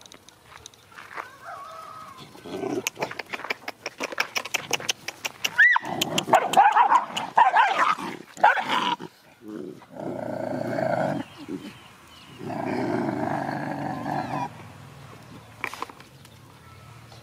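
Dogs scuffling in play, a rapid flurry of snarls and yelps over the first half, then two longer growls, the second lasting about two seconds, in the second half.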